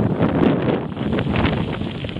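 Wind buffeting the microphone of a camera on a moving bicycle, a loud steady rumble with frequent small clicks and rattles from the ride.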